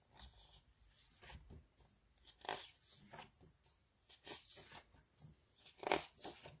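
Glossy pages of a photo book being turned by hand: a series of papery swishes and rustles, the loudest about two and a half seconds in and near the end.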